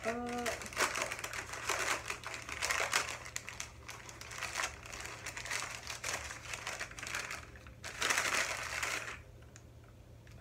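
Packaging wrapper crinkling and rustling as a small package is unwrapped by hand. It is loudest near the end and stops about nine seconds in.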